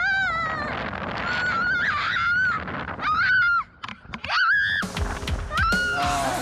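A young woman screaming during a bungee free fall: long, high, wavering screams broken by short pauses, described as surprisingly loud. Music comes in under them near the end.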